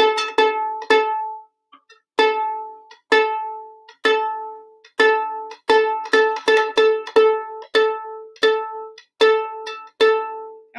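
A violin's A string plucked again and again, about fifteen plucks of the same note, each ringing and fading, with a short pause about a second and a half in and quicker plucks in the second half. The string sits a few cents flat and is being brought up to A440 by turning its fine tuner clockwise between plucks.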